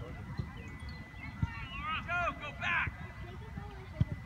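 Distant raised voices shouting across a soccer field, a few calls in a row in the middle, over a low, irregular rumble and knocking on the microphone.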